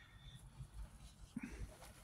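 Near silence: faint low rumble of a parked car's cabin, with one brief soft sound about one and a half seconds in.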